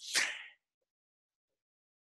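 The end of a man's spoken word, trailing off in a short hiss in the first half second, then dead silence.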